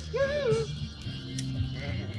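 Music playing, with steady bass and a sung line that rises and falls near the start; a single sharp click about one and a half seconds in.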